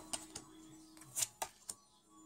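Tarot cards being dealt and laid down on a wooden table: several short soft taps and slaps of card on wood, the loudest just after a second in.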